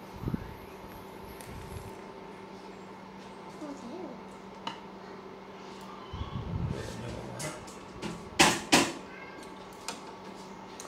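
Steady electrical hum from an induction cooktop heating a small stainless steel saucepan of beaten egg in oil. Two sharp knocks in quick succession about eight and a half seconds in.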